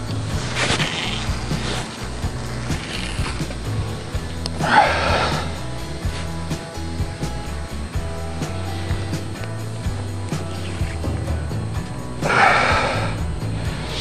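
Background music with low held chords, over which come three short whooshing swishes. The first, about half a second in, comes as a spinning rod is swung overhead to cast; the others fall near the middle and near the end.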